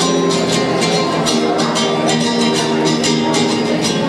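Two nylon-string classical guitars strummed together in a steady, even rhythm, several strokes a second: the instrumental opening of a Latin American folk song, before the singing comes in.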